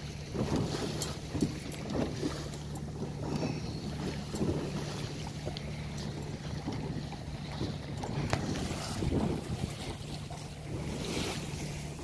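Yamaha outboard motor running steadily at low speed, a constant low hum, with water splashing along the hull and wind buffeting the microphone.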